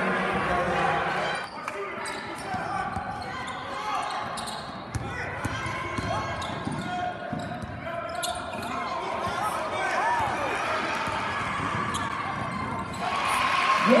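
Indoor basketball game sounds in a gym: a basketball dribbled on the hardwood floor under a steady chatter of spectators' and players' voices. Near the end the voices swell into a cheer.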